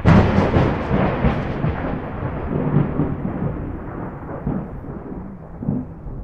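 A sudden loud crash followed by a long rolling rumble that slowly fades, with a couple of low swells near the end.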